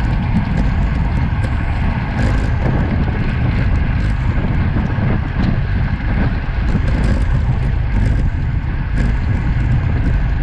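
Steady wind rush over an action camera's microphone on a road bike riding at about 35 km/h, with the hum of tyres rolling on coarse tarmac.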